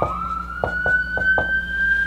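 An emergency-vehicle siren wailing, its pitch jumping up at the start and then rising slowly. A marker writing on a whiteboard makes several short strokes under it.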